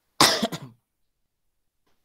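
A man coughs once, a short noisy burst of about half a second, a little after the start.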